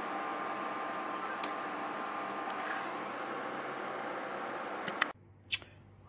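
A kitchen appliance's fan running steadily with a faint thin whine, and a single light click about a second and a half in. The sound cuts off suddenly near the end.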